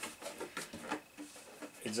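Thin plastic RC car body shell being picked up and handled: faint, irregular rustles and light clicks of the plastic.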